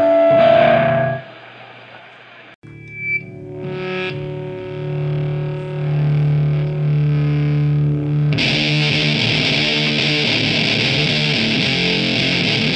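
Heavy sludge/doom metal. A distorted chord rings out and fades to quiet about a second in. A distorted electric guitar then holds sustained notes on its own, and the drums and cymbals come in with the full band about eight seconds in.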